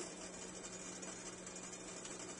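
Faint steady background hiss with a low hum, and no distinct sounds.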